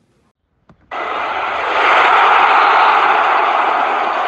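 A loud, even rushing noise, an edited-in transition sound effect for a title card. It starts suddenly about a second in, swells to its loudest in the middle and then begins to ease off.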